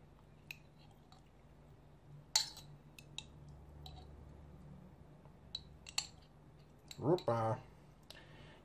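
A spoon clicking and tapping against a small glass jar and bowl as relish is scooped out: a scattering of sharp single clicks, one louder about two and a half seconds in, over a faint steady hum. A brief vocal murmur near the end.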